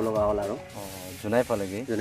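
A man talking over background music, with a brief hiss about a second in.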